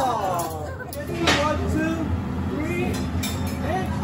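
Diners' voices and laughter over a steady low hum from the extractor hood above the teppanyaki hotplate, with a single sharp clink a little over a second in.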